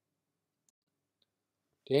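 Near silence between spoken sentences, with one faint click about a second in; speech starts again right at the end.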